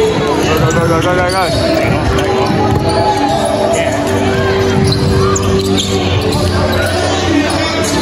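A basketball being dribbled on a wooden court floor during live play. Steady arena music and voices run underneath.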